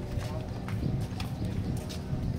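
Footsteps on tiled paving, a few sharp clacks, over the chatter of passing people's voices and a steady low street rumble.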